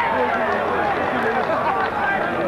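Football match spectators' voices, many people talking and calling out over one another at an even level, with no single voice standing out.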